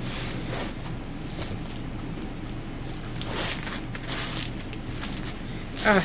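Light, irregular rustling as a diamond painting canvas is handled and smoothed out, over a steady low hum.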